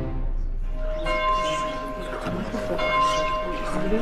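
A church bell tolling: two strokes about two seconds apart, each ringing on as a long steady hum.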